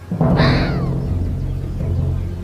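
Ezo red fox vixen giving one shrill alarm bark about a quarter second in, the call falling in pitch and lasting under a second, over background music with low sustained notes.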